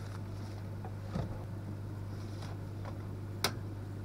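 Steady low hum with light handling sounds of the optics' plastic cases on the laser cutter's metal bed: a faint tap about a second in and one sharp click near the end.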